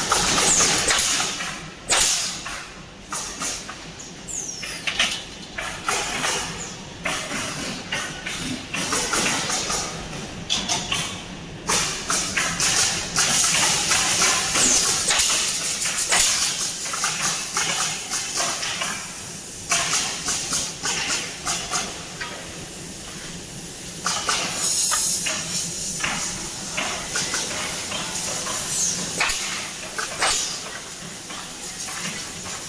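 Wooden pallet nailing machine at work: many sharp knocks from its pneumatic nailing heads and from wooden boards being dropped into the jig, with bursts of air hiss.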